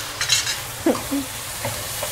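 Small pieces of chicken sizzling in a hot frying pan with honey just added, being stirred with tongs that click against the pan.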